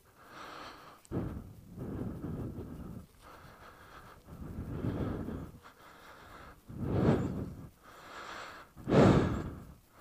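A person breathing close to the microphone: a series of uneven breaths with short pauses between them, the two loudest near the end.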